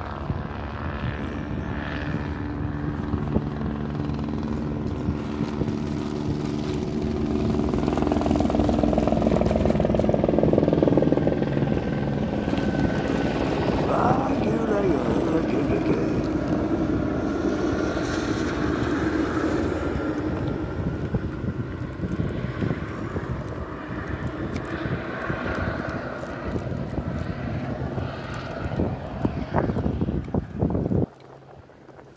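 Helicopter flying over, its steady engine and rotor drone growing louder to a peak about ten seconds in, then slowly easing off.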